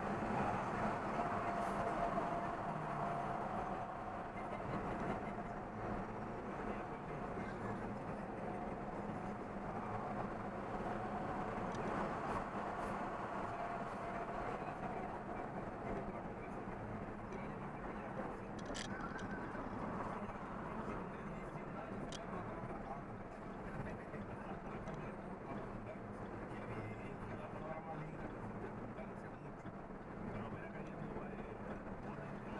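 Steady engine and road noise of a truck cruising at highway speed, heard from inside its cab, with a constant low drone.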